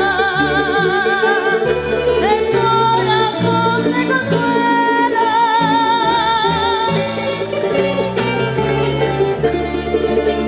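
Canarian folías played by a folk ensemble: a woman sings long held notes with wide vibrato over plucked and strummed guitar, laúd and accordion.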